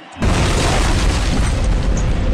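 Explosion sound effect: a sudden loud boom about a quarter second in, running on as a dense, deep rumble.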